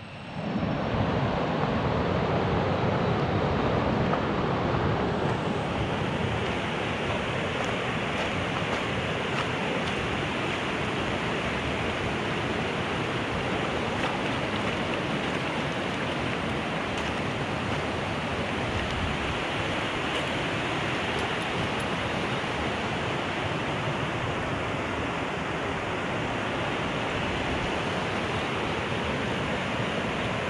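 Shallow rocky stream running over stones, a steady rushing hiss, a little louder in the first few seconds.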